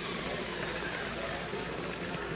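Zip-line trolley pulleys rolling along a steel cable: a steady whirring hiss with a faint whine slowly dropping in pitch.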